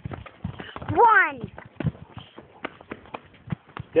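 A single drawn-out shout about a second in, followed by quick, irregular footfalls on asphalt: someone sprinting out to run a pass route.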